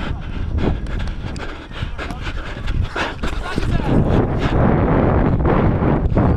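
Wind buffeting a body-worn camera's microphone as the wearer runs, with repeated thuds of footsteps on grass. The rumble grows louder about halfway through.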